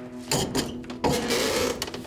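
Large wooden-framed wall panel being shifted by hand on a concrete floor: two bursts of scraping and rattling, about a third of a second in and again about a second in, over a steady low hum.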